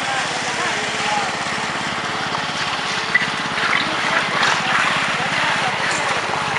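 An engine runs steadily, with people's voices calling out over it.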